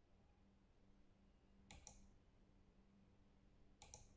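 Near silence broken by two faint computer mouse clicks, about two seconds apart.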